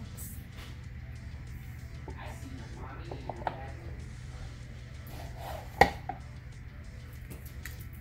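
A sublimated MDF panel being slid into the front of a small wooden pencil box: light handling sounds, then one sharp click about six seconds in as it seats. Background music plays throughout.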